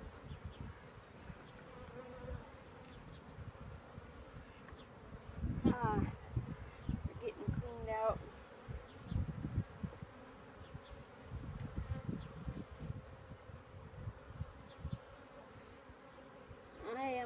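Honey bees buzzing around an open hive while frames are handled, a steady hum with low irregular thumps. Twice around the middle a sharper buzz swoops in pitch, as a bee passes close to the microphone.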